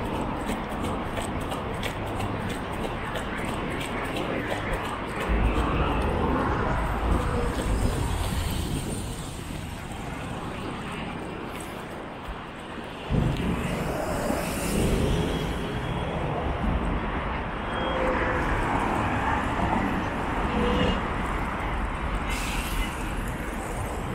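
City street ambience beside a wide, busy avenue: steady traffic of cars and buses passing, with passers-by talking. A low rumble thickens about five seconds in, fades briefly, and comes back suddenly about thirteen seconds in.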